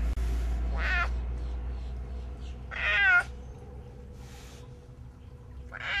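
Clouded leopard meowing three times in high, wavering calls: a short one about a second in, a longer and louder one around three seconds, and another near the end.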